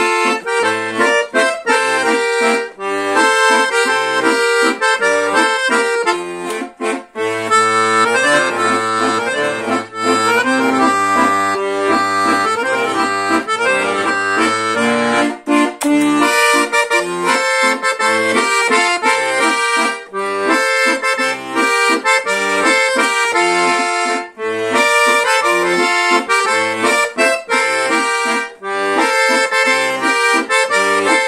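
Scandalli 120-bass piano accordion played on the master register: a melody with full chords on the right-hand keyboard over a pulsing left-hand bass, with short breaks about seven seconds in and near the end.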